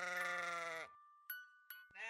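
A sheep's bleat, one 'baa' about a second long, falling in pitch as it ends. A faint steady high tone and two light clicks follow, and a second bleat begins at the very end.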